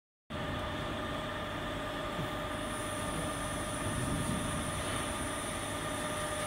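Auger powder filler running: a steady motor hum with a constant high whine.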